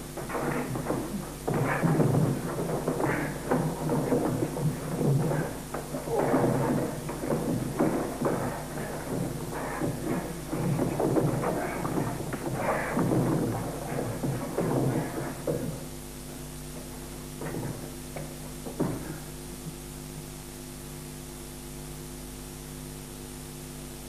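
Steady electrical mains hum from an old VHS recording of a broadcast film. For about the first sixteen seconds it lies under the film's own soundtrack, which then stops and leaves the hum alone, with two short faint sounds a little later.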